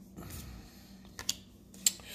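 Baseball cards being flipped through by hand: a few light flicks and clicks as the cards slide off the stack, the sharpest one near the end.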